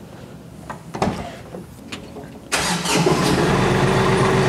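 Tractor engine started about two and a half seconds in: it catches suddenly and settles into a steady idle, running the hydraulic pump. A few faint clicks come before it.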